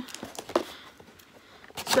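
Cardboard packaging box being handled, with a sharp tap about half a second in and faint rustling and clicks after it.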